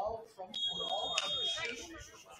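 A referee's whistle gives one steady high blast about a second long, starting about half a second in, over several voices calling out.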